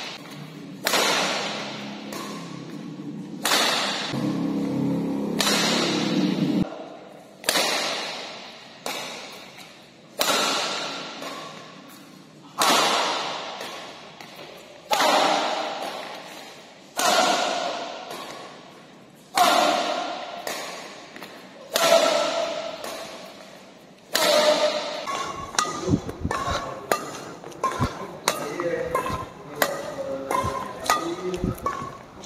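Badminton rackets, one of them a Hi-Qua Smasher 9, hitting a shuttlecock back and forth in a long rally. There is one sharp hit about every two and a half seconds, each echoing through the large hall. Music comes in near the end.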